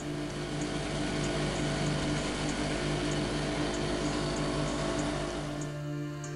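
Johnson 70 two-stroke outboard motor running at speed, with the rush of the boat's wake and spray over it. It cuts off suddenly near the end, leaving the background music that runs underneath.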